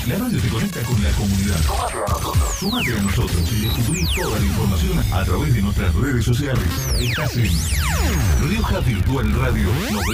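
Radio station jingle: electronic music with a steady beat, cut with sharp downward-sweeping whooshes several times and rising sweeps near the end.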